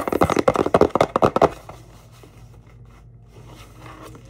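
A cardboard mailer box handled and rubbed close to the microphone: a quick run of rustling scrapes for about a second and a half, then only a faint steady room hum.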